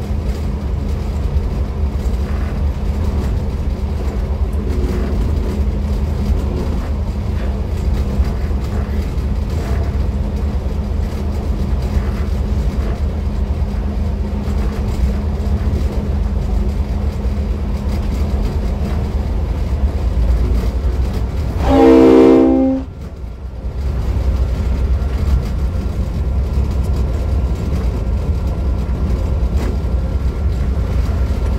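Steady low rumble of a V/Line N class diesel locomotive running at speed, heard from the cab, with one loud blast of its horn a little past two-thirds through, about a second long.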